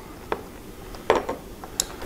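A few light clicks and taps, roughly a second apart, as a chrome motorcycle turn-signal housing and its hardware are handled and fitted back onto the fairing mount.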